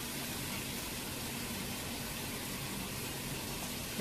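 Steady hiss of biryani masala frying in oil in a pan.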